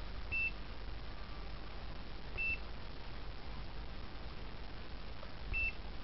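UNI-T UT203 clamp multimeter beeping three times as its buttons are pressed: short, high single-tone beeps, the second about two seconds after the first and the third about three seconds later.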